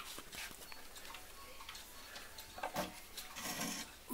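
Howard Miller 341-020 mechanical pendulum clock movement ticking softly. Near the end there is a louder click and some handling as the clock's glass front door is opened.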